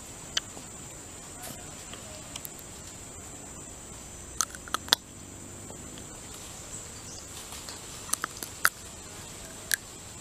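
Steady high-pitched insect drone of the forest, with a scattering of short sharp clicks from the baby orangutan chewing and smacking its lips as it eats, a few clustered about halfway through and again near the end.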